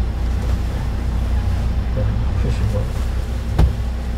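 Steady low engine and road rumble heard inside the cabin of a Kia light truck driving slowly, with a single sharp click near the end.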